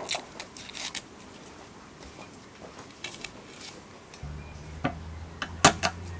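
Garlic being peeled and cut with a chef's knife: light clicks of the blade working a clove, then a few sharp knife strikes on a hard cutting board near the end. A low steady hum comes in about four seconds in.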